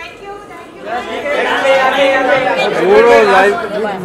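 Several people talking loudly over one another, louder from about a second in.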